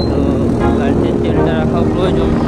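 A motorcycle engine running steadily while riding, under a song with a sung voice.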